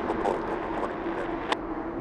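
Boeing 747-8 freighter's GE turbofan engines running at taxi idle: a steady jet rumble with one steady tone held through it. A single click sounds about one and a half seconds in.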